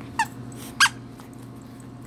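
Squeaky dog toy squeaking twice in short, high-pitched squeaks as a puppy bites on it; the second squeak is the louder.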